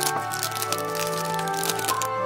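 Clear plastic gift bag crinkling and crackling as cake slices are slid in and the bag is handled, over steady background music.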